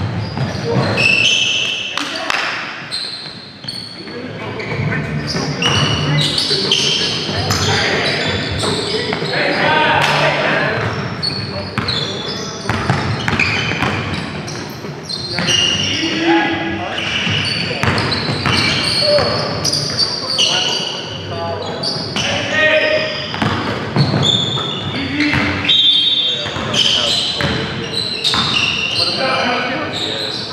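Live basketball game in an echoing gym: the ball bouncing on the court, sneakers squeaking on the floor, and players' voices calling out.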